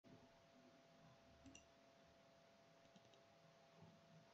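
Near silence with a faint steady hum, and two faint clicks about one and a half seconds in.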